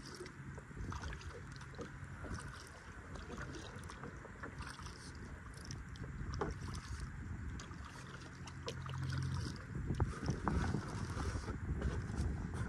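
Kayak being paddled: water splashing and dripping from the paddle and lapping at the hull as many small scattered drips, over a low rumble that grows louder near the end.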